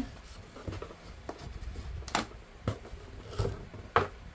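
Rustling and soft bumping of a heavy wrapped package being handled and lifted out of a cardboard box, with a few short sharp knocks in the second half.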